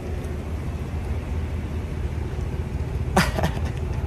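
Low, steady rumble of a car running, heard from inside the car. About three seconds in there is a short, rising, voice-like squeak.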